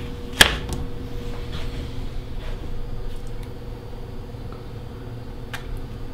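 A plate of muffins set down on a table, giving one sharp knock about half a second in, over a steady low hum.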